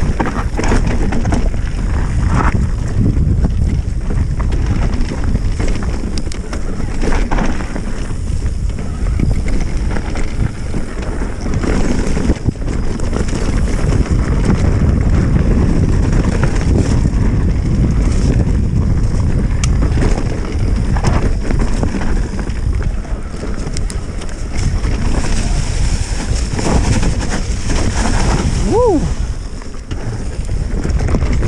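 Wind buffeting the microphone of a camera on a mountain bike riding down a dirt trail, with the tyres rolling over dirt and fallen leaves. Near the end there is a short pitched sound that falls in pitch.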